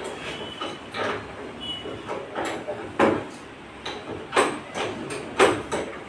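Irregular sharp clicks and knocks from hands working on a split air conditioner's wall-mounted indoor unit, with a few louder knocks in the second half.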